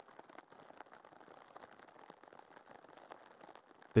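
Near silence: a faint hiss with scattered tiny clicks.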